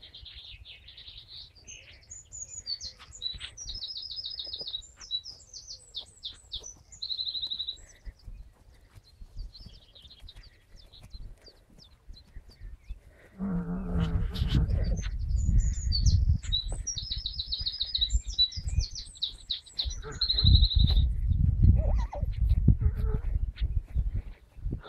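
A songbird singing the same phrase of high whistles ending in a fast trill, twice, about fifteen seconds apart. From about halfway through, a low rumbling noise sits underneath the song.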